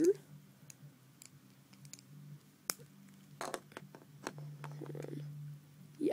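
Plastic Lego bricks and plates clicking and tapping as they are handled and pressed onto a baseplate: a scatter of short sharp clicks, with a small cluster about halfway through, over a steady low hum.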